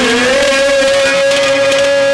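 Live Haryanvi ragni music: a long held note over a steady harmonium drone, with light drum strokes.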